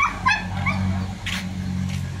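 Three or four short, high-pitched animal calls in quick succession, over a steady low hum.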